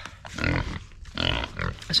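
Pigs grunting: two short, rough grunts, the second about a second in.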